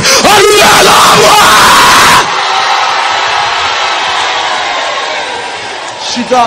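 A man yelling at full voice, with a loud burst of crowd shouting and cheering. About two seconds in, the sound drops abruptly to a fainter, steady crowd noise that slowly fades away.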